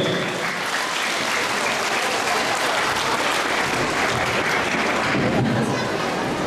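Audience applauding steadily, welcoming a guest speaker who has just been introduced.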